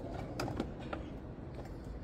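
A few light clicks and taps, mostly in the first second, as a plastic middle body panel is pushed into place on a Benelli Velvet scooter.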